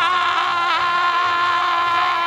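A voice holding one long, steady sung note, sliding up into it and falling off at the end.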